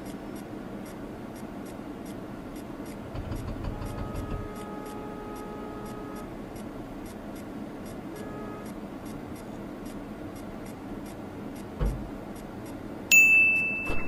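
Steady car-cabin background noise with faint ticking at an even pace, a single thump about twelve seconds in, then a bright steady ding near the end.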